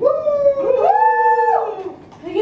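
Two voices holding a long, drawn-out howl-like note together: one slides slowly down, while the other rises about halfway in, holds a higher pitch and drops away near the end.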